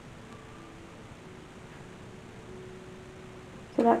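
Quiet room tone with a faint steady hum, no distinct handling sounds; a woman starts speaking near the end.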